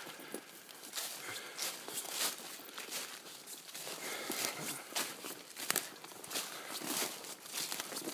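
Footsteps walking through thick fallen leaf litter, each step a rustling crunch of leaves, repeated throughout.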